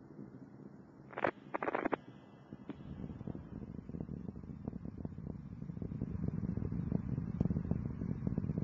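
Distant rumble of Space Shuttle Discovery's rocket motors during ascent, a low roar full of crackles that grows louder after about three seconds. A short crackly burst comes about a second in.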